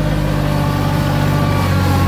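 Kioti CK2610 compact tractor's three-cylinder diesel engine running steadily under load as the tractor climbs a gradual hill with the drive pedal being pushed toward the floor. The fuel screw has been backed out two full turns to raise power.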